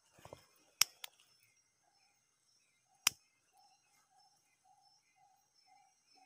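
Mostly quiet, with a few sharp clicks: two about a second in and one about three seconds in. After that, a faint call of short, even notes repeats about three times a second.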